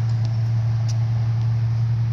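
A steady low hum, unchanging in pitch and level, with a faint click about a second in.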